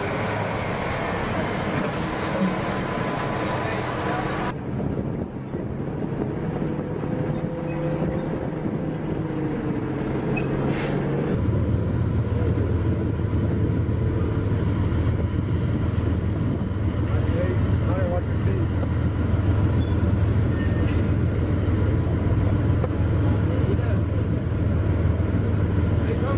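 Heavy military vehicle engines running. The sound changes abruptly twice, like cuts, and about eleven seconds in it settles into a louder, steady low engine drone.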